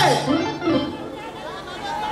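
A woman's voice through the microphone slides steeply down at the end of a sung phrase, then several people talk and chatter over the amplified system, with music faint underneath.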